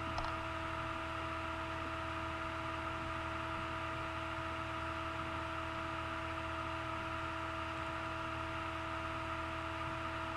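Steady electrical hum and hiss with several constant tones. There is a single short click just after the start.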